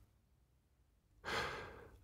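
Near silence, then a short audible breath from the narrator starting a little over a second in and fading out over about half a second.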